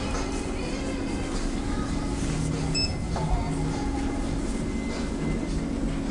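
Background music over the general hum of a shopping-mall interior, with a short high electronic beep about three seconds in.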